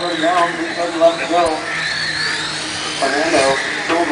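High-pitched whine of electric radio-controlled racing cars running on the track, rising and falling in pitch as they speed up and slow down, under people's voices.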